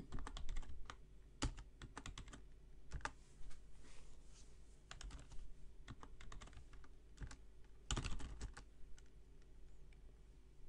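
Computer keyboard being typed on: short, irregular runs of keystrokes with pauses between them, the loudest run about eight seconds in.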